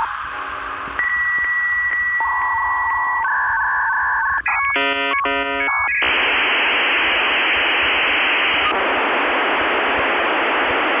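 A run of steady electronic tones that switch every second or two, a high tone with faint regular ticks, then a dense cluster of tones, giving way about six seconds in to a loud, steady hiss.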